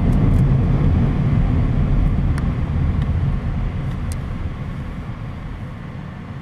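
Low road and engine rumble of a moving car heard from inside the cabin, fading steadily as the car slows.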